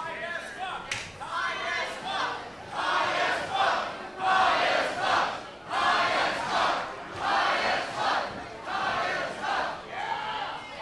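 Wrestling crowd chanting in unison, a rhythmic shouted chant of about two beats a second that builds after the first second. A sharp knock sounds about a second in.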